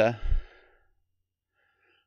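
A man's short 'uh' followed by a breathy sigh in the first half second, then silence for over a second.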